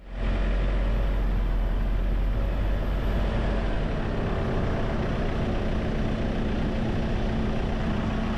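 A car being driven: a steady low engine and road rumble with a constant low drone, which fades in quickly at the start and holds evenly.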